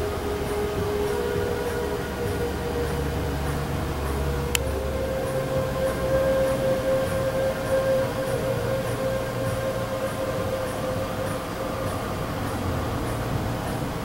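Synthesized sci-fi 'reactor' sound effect played from a computer: a steady low drone with higher humming tones that step up in pitch about four and a half seconds in, marked by a single click.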